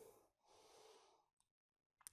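Near silence: faint room tone in a pause of speech, dropping to dead silence shortly before the end.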